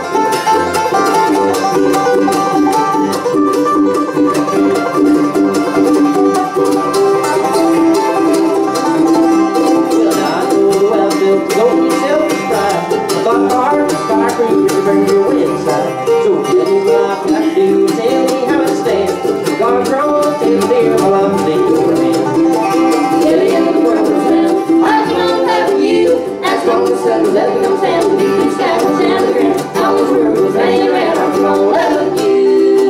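Live bluegrass band playing: five-string banjo to the fore over acoustic guitar, mandolin and upright bass, steady and unbroken.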